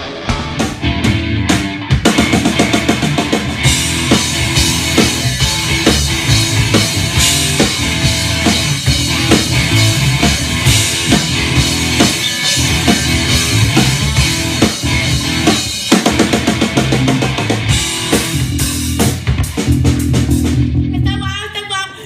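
Instrumental rock played by a band: a drum kit played hard, with bass drum and snare driving a steady beat under electric guitar and bass, no vocals. The music drops away near the end.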